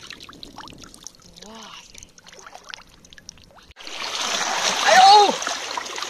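Shallow water lapping with small splashes. About two-thirds of the way through, louder rushing of surf washing over rocks starts abruptly, with a short vocal exclamation over it.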